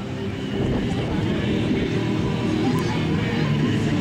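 Music with background voices, fairly loud and steady throughout.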